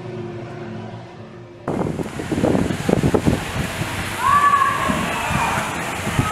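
Faint background music, then a sudden switch, under two seconds in, to a loud, steady rush of splashing water. Faint distant voices call over it from about four seconds in.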